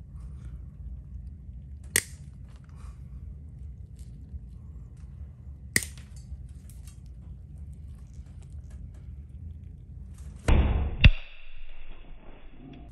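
Stainless toenail nippers snapping through thick, overgrown toenail, with sharp single cracks about two seconds and six seconds in. Near the end comes a louder burst of noise with another sharp crack.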